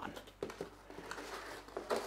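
Cardboard box being set down on a workbench and handled: a light knock about half a second in and a brief scrape or rustle of cardboard near the end.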